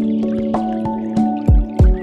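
Chill music: held pitched notes and chords over a beat with light percussive ticks, and two deep kick-drum hits in the second half.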